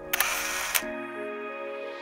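A short camera-shutter click sound effect in the first second, then held chords of background music.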